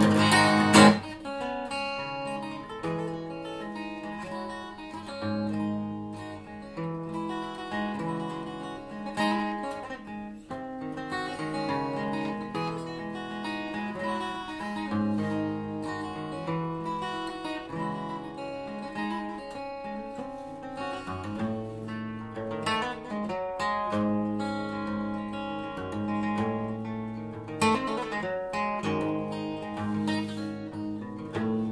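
Takamine ETN10C cutaway acoustic guitar played with a capo: continuous picked notes and chords, with a loud strummed chord about a second in.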